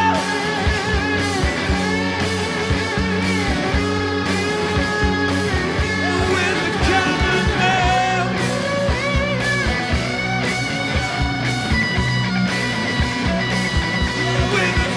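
A live rock band playing: electric guitar and bass over a steady drum beat.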